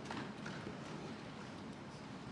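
Scattered, rapid thumping of hands on wooden desks, the Lok Sabha members' form of applause, heard fairly faintly over the chamber's room noise.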